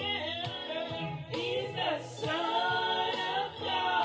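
A woman singing a religious song, holding long notes that slide in pitch, over music with a steady beat about once a second.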